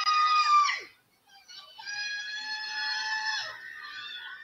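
Two long, high-pitched held screams from the soundtrack of the soccer clip. The first ends with a falling pitch just under a second in. The second, lower and steady, runs for about two seconds.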